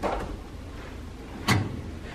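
Slices of sourdough bread being put into a stainless-steel two-slot toaster, with one sharp knock about one and a half seconds in.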